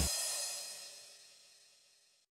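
The end of a short drum-kit flourish: the drum's low boom stops at once, and a cymbal rings on, fading away to silence within about a second and a half.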